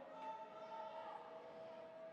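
Near silence: faint room tone with a few faint steady tones.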